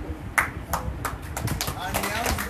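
A few sharp hand claps at uneven intervals, the first the loudest, among people's voices.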